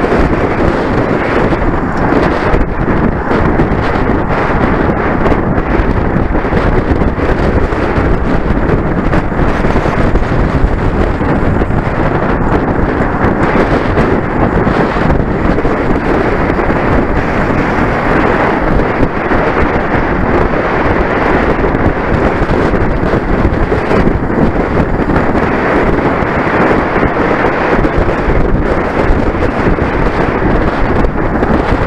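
Loud, steady wind buffeting the microphone of a camera mounted on a road bike that is moving at race speed.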